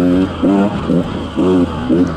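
KTM 150 XC-W two-stroke single-cylinder engine revving in short throttle bursts, about four in two seconds, each rising in pitch and then dropping away.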